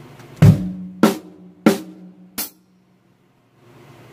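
Acoustic drum kit struck four times at a slow, even pace, about half a second apart. The first hit is the loudest and deepest, and a drum tone rings on under the next two. The last hit is short and bright, and the sound then cuts off suddenly.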